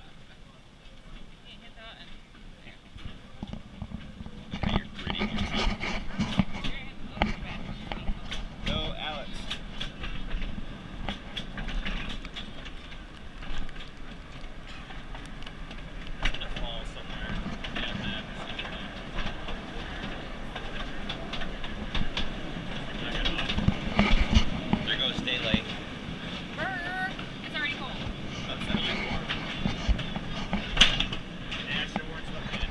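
Small mine tour train cars rolling and clattering over the rails, the clatter building up about four seconds in as the train gets moving and then running on unevenly.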